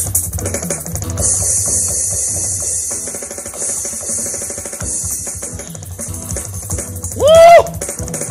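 Fast drumming on an electronic drum kit, with dense rapid hits under a steady cymbal wash. Near the end a short, loud vocal exclamation rises and falls in pitch.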